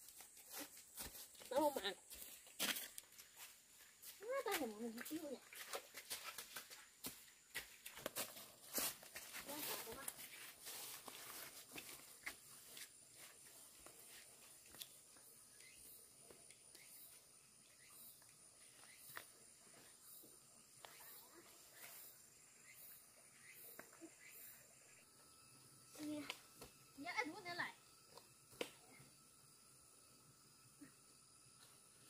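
A few short wordless vocal cries or groans from a person, rising and falling in pitch: about two seconds in, again around four to five seconds, and near the end. Between them come scattered clicks and scuffs, over a faint steady high-pitched hum.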